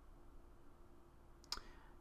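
Near silence: room tone, with one brief sharp click about one and a half seconds in.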